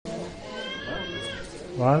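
Background chatter of people in a large room, with a brief high-pitched voice in the middle; near the end a man starts speaking loudly close by.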